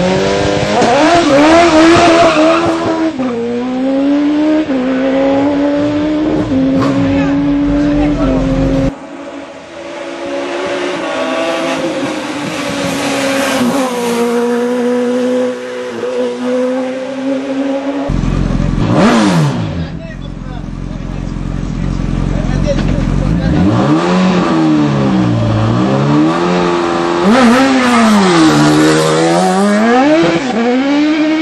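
Race-tuned sports-prototype engines at full throttle on a hill climb: the pitch climbs through each gear and drops sharply on the shifts. One car passes close by with a quick falling pitch. Near the end the engine note dips and climbs again twice as a car lifts off and accelerates through bends.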